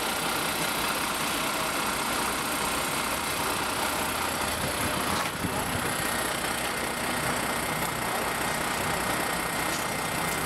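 A vehicle engine idling steadily, with a crowd of people talking over it.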